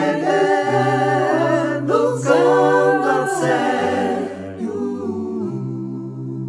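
A small a cappella vocal group singing in four parts in Dutch. Around four seconds in, the upper voices fall away and the group settles onto a softer held chord.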